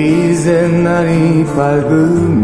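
Two male singers of a 1970s Korean folk duo holding a long sung note together, steady with a slight vibrato, ending about two seconds in.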